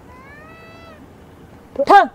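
Short meow-like vocal calls, plausibly a person shouting to shoo egrets off a flooded field: a faint call that rises and then holds in the first second, then a short loud cry near the end.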